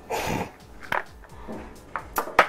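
Plastic lunchbox containers being handled as a tray is lifted out of a bento box: a short scraping rustle, then two sharp plastic clicks about a second apart.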